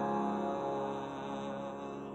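The last sung note of a slow song, held over its accompanying chord and fading away steadily.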